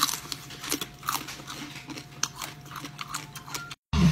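Close-up biting and chewing of shellfish, with many sharp irregular crackles of shell cracking over a steady low hum. The sound cuts off abruptly just before the end.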